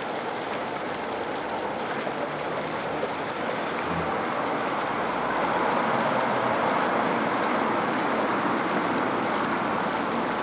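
Road traffic passing close by: the steady tyre and engine noise of cars, swelling about five seconds in as a car drives past.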